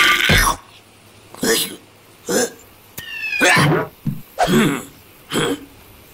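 A cartoon creature's short wordless vocal sounds: about six brief grunts and hums spread over a few seconds, some with bending pitch. The louder sound at the very start cuts off about half a second in.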